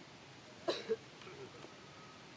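A brief, sharp, cough-like sound in two quick bursts about a fifth of a second apart, followed by a few faint soft sounds.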